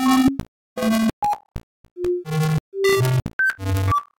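Software-synthesized music in irregular single notes: about a dozen short tones, each with its own pitch and timbre, some pure and whistle-like, others buzzy with many overtones, separated by brief silences. The pitches jump unpredictably from low bass notes to high ones, with no steady beat.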